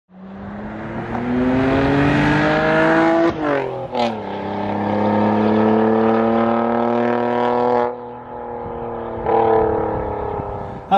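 A car engine accelerating hard: its pitch climbs through one gear, breaks for a gear change with a sharp crack about four seconds in, then climbs again in the next gear until the driver lifts off about eight seconds in.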